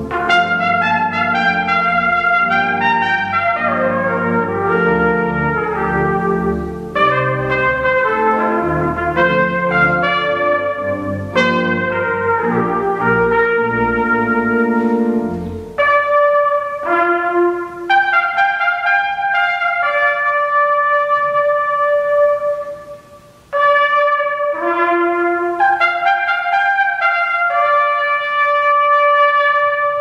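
Trumpet playing a melody over sustained pipe organ chords. About halfway through the organ drops out, and the trumpet goes on alone in separate held notes with short breaths between phrases.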